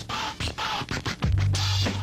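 Hip-hop beat with record scratching cut into it; a deep, heavy bass line drops in just over a second in.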